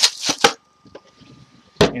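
Plastic bags rustling against a wooden drawer with two sharp knocks in the first half-second. Near the end a wooden drawer is knocked shut with a single sharp thump.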